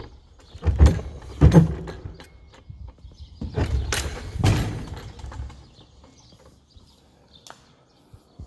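Old wooden plank door being pushed open by hand: two sharp knocks about a second apart, then a longer grating noise as the door is forced open.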